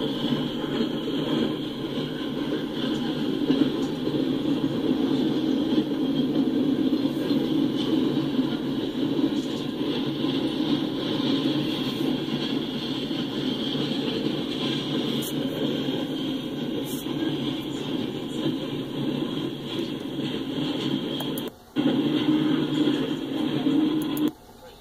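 Freight cars rolling past at close range: a steady rumble of steel wheels running on the rails. It cuts out for a split second near the end, then resumes.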